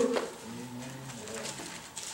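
A faint, low hummed "mm" from a member of the congregation, lasting about a second.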